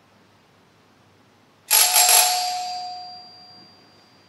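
Church altar bell struck three times in quick succession, ringing out and fading over about two seconds, as is typical at the start of Mass.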